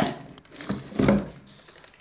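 Cardboard shoebox lid being handled and lifted off the box, with a short burst of cardboard handling noise about a second in.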